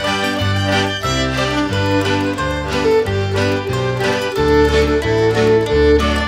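Instrumental break in a folk song: a fiddle plays the melody over guitar accompaniment and changing low bass notes, with a long held note near the end.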